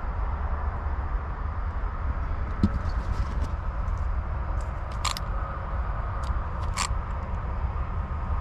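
Steady low rumble of background noise, with a few light clicks and taps from hands handling the plastic RC car chassis, two sharper clicks falling near the middle.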